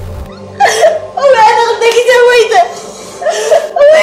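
A woman crying and wailing in distress, a series of long, wavering cries with short breaks between them, over background music.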